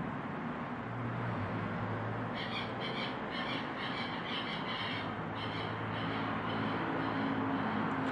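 A bird squawking in a quick series of short calls, about three a second, beginning a couple of seconds in and fading out after about four seconds, over a low steady hum.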